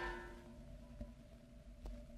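The last notes of a salsa song dying away in the first half-second, then faint steady hum and hiss with two small clicks, one about a second in and one near the end.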